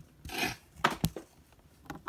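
Plastic toy figures handled on a tabletop: a brief rustle, then two sharp taps close together just under a second in, and a faint tick near the end.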